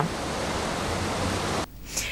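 River water rushing over a low weir: a steady, even rush that cuts off suddenly about a second and a half in.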